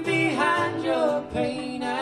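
A man and a woman singing together in a live folk song, the voices to the fore.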